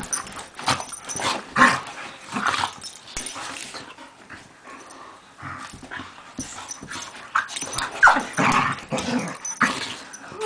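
Two dogs, a beagle mix and a pit bull, play-wrestling and mouthing each other's faces: irregular bursts of play growls and mouth noises, loudest about a second and a half in and again about eight seconds in.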